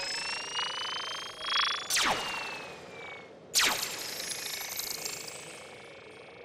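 Cartoon ray-gun sound effect: a rising electronic whine, then two sharp swooping zaps about a second and a half apart, each trailing off in a fading shimmer.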